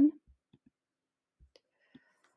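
A few faint, short computer-mouse clicks spread through near-silent room tone, just after a spoken word ends at the start.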